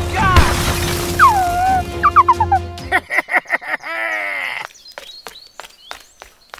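Added cartoon-style sound effects and music: a low drone with squeaky sliding tones, then a short burst of chattering voice-like squeaks, ending in a run of sharp ticks.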